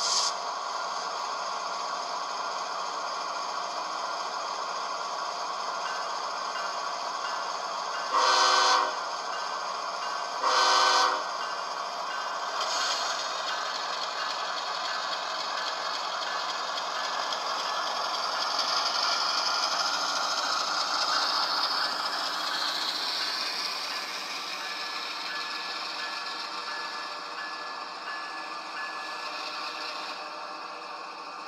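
HO-scale model locomotive's DCC sound decoder (Tsunami2) playing a GE diesel engine sound through its small on-board speaker. Two horn blasts of a modelled Nathan K5HL sound about eight seconds in, the second about two and a half seconds after the first. The engine sound swells about two-thirds of the way through, then eases off.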